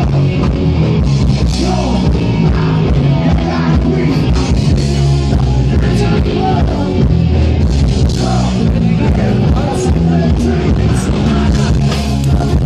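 Loud rock music, a band with guitar and singing, playing without a break.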